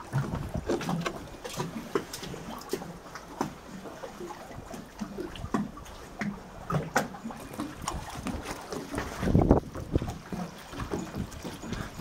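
Scattered light knocks and clicks of someone moving about and climbing aboard a fiberglass fishing boat, with one heavier thump about nine and a half seconds in. There is some wind on the microphone.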